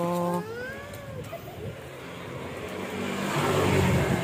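A motor vehicle's engine running as it passes close by, a low steady hum that grows louder through the second half. Near the start there is a short high gliding call.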